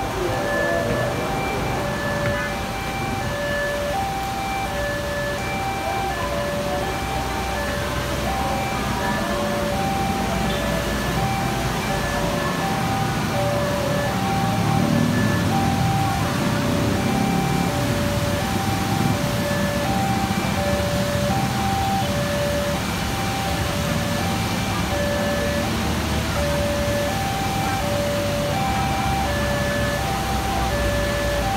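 An electronic two-tone chime, high and low notes taking turns about every three-quarters of a second, repeats steadily throughout. Beneath it is a low rumble of traffic that swells louder midway.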